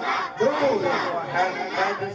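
A crowd of men and boys chanting loudly together in rhythm, led by a man's voice over a microphone.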